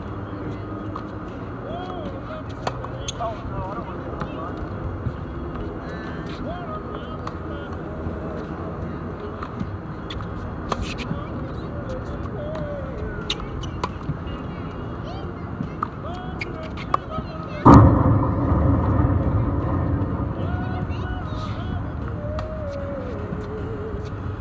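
Tennis balls struck with racquets during a baseline rally: short sharp pops every second or two over a steady outdoor background. About three-quarters of the way through, a sudden loud rush of noise breaks in and fades away over a few seconds.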